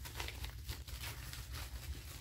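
Faint, scattered crackling and rustling of tissue paper being handled around a wrapped gift.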